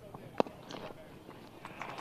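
Cricket bat striking the ball once: a single sharp crack from a cleanly timed stroke.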